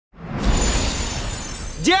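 Trailer opening sound effect: a shimmering, sparkling swell that rises in over the first half second and holds, with faint high ringing tones over a low rumble. Near the end it gives way to a shout.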